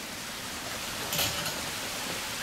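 Steady splashing of the bungalow's outdoor fountain water, with a brief hiss a little after a second in.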